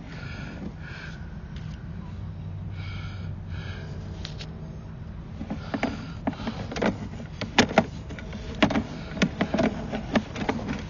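A sewer inspection camera's push cable being fed down a drain line, with irregular sharp clicks and knocks starting about halfway through, over a steady low hum.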